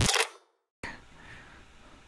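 The tail of an electronic intro sound effect: a loud noisy burst that cuts off about half a second in, followed by a moment of dead silence and then faint room tone.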